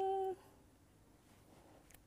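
A short hummed 'mmm' held at a steady pitch for about a third of a second, then near silence.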